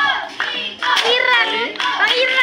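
Several children's high voices calling out at once, with a few scattered hand claps.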